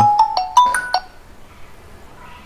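Smartphone ringtone for an incoming call: a quick melody of short, bright notes that cuts off about a second in as the call is dismissed.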